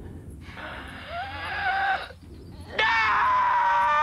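A high-pitched scream. A rising cry about half a second in is followed, near the three-second mark, by a louder long held scream.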